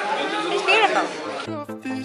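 Indistinct chatter of several voices, then background music with a steady beat cuts in suddenly about one and a half seconds in.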